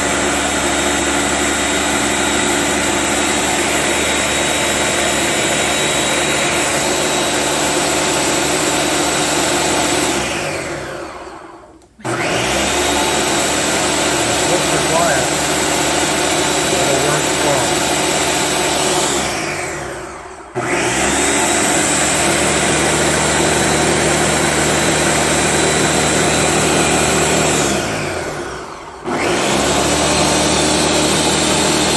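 Ninja Professional Plus blender motor running at full speed on its Auto-IQ smoothie program, churning a thick cream and condensed-milk mixture. Three times it winds down to a stop over a second or two and starts straight up again, about a third of the way in, about two-thirds of the way in and just before the end. This stop-and-restart cycling is the automatic program's pulse pattern.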